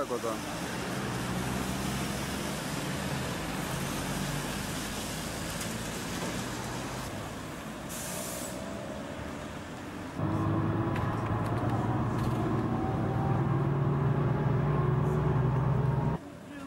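Street traffic noise for about ten seconds, with a short hiss about eight seconds in; then, after a cut, the steady engine drone of a road vehicle heard from inside while it drives, louder than the street.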